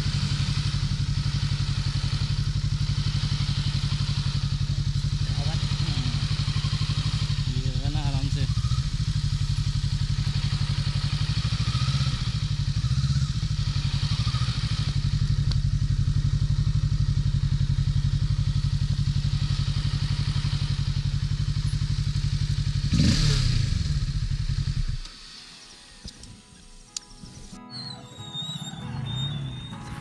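Motorcycle engine running steadily at a low, even pace, with a short blip of throttle about 23 seconds in; the engine sound then cuts off suddenly about two seconds later.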